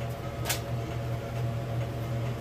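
Steady low mechanical hum, with one sharp click about half a second in.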